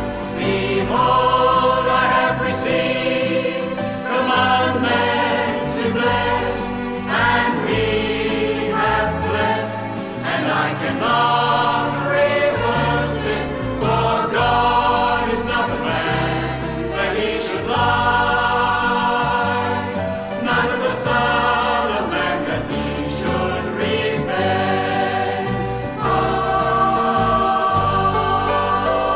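Group of voices singing a scripture song in chorus over instrumental accompaniment with steady bass notes.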